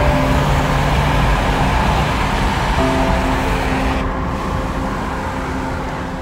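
Loud wind rushing in through the open window of a moving car and buffeting the phone's microphone, with road noise underneath; it eases slightly about four seconds in.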